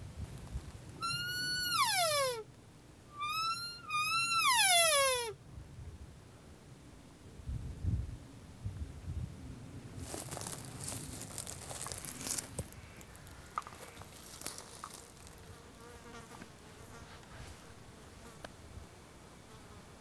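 Two elk bugles: each a high whistle that holds and then slides steeply down into a rasping scream, the second longer, with a rise before the fall. A few seconds of scratchy rustling follow later on.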